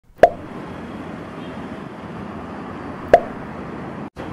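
Two short, sharp pops, each dipping slightly in pitch, about three seconds apart, over a steady background hiss.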